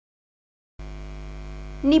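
Dead silence, then about a second in a steady electrical mains hum switches on, a low buzz with many overtones. A voice begins right at the end.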